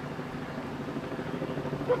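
A vehicle engine running steadily in a low, even rumble, with a short sharp voice sound just before the end.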